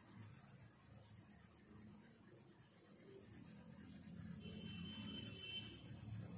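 Faint scratching of a coloured pencil shading on paper, a little louder in the second half.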